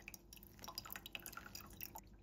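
Hot water trickling in a thin stream onto coffee grounds in a stainless steel mesh pour-over dripper, with soft, irregular little drips and splashes.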